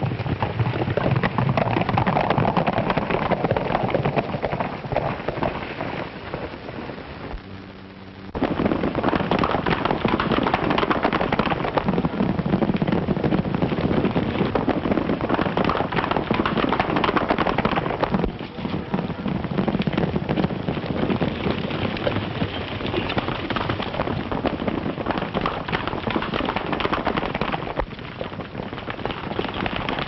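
A group of horses galloping, a dense continuous clatter of many hooves. It drops away briefly near eight seconds in, then comes back at full strength.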